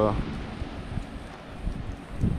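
Low, uneven rumble of wind buffeting the microphone outdoors, with a spoken word trailing off at the very start.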